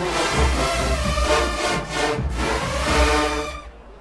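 A massed marching band's brass section, with trumpets, trombones and sousaphones, plays a loud tune over a low pulsing beat and cuts off abruptly near the end.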